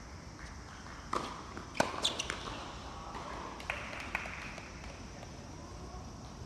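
Tennis ball being struck by rackets and bouncing during a doubles rally on a hard court: a string of sharp pops, the loudest about two seconds in, with a quick cluster just after and two more hits near the four-second mark.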